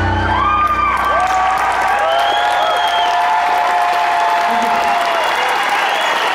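A final low piano chord rings out and fades while a large concert audience applauds, cheers and whoops.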